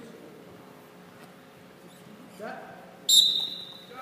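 A referee's whistle blown once, short and loud, about three seconds in, over a faint murmur of voices in the gym.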